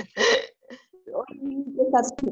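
Indistinct voices over an online class call: a short breathy vocal burst near the start, then low, mumbled speech-like sounds from about a second in.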